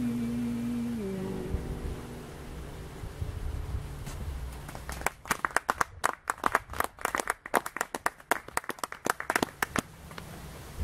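The last sung note and acoustic guitar chord of a song ring out and fade in the first second or so. From about five seconds in a small audience claps, with separate hand claps heard, and the clapping stops just before the end.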